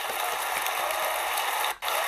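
Audience applauding, a dense steady clatter of many hands, that drops out briefly near the end.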